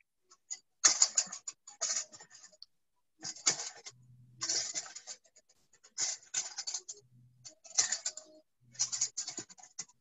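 Hands kneading a flour-and-water dough in a stainless steel mixing bowl: short clusters of scraping and rubbing strokes against the bowl, about once a second, with brief pauses between them.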